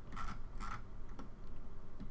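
A few faint, scattered clicks from a computer mouse, about half a second apart, over a low steady hum.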